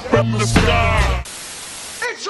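Music with a heavy bass line cuts off suddenly about a second in, giving way to the steady hiss of television static.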